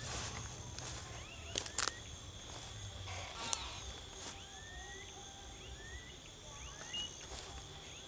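Short rising whistled calls of smooth-billed anis, repeated every second or so, over a steady high-pitched insect drone. Several sharp clicks and rustles come from footsteps and handling as the recordist walks through grass.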